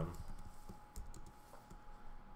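A few separate keystrokes on a computer keyboard, faint and unevenly spaced, as a short line of code is typed and run.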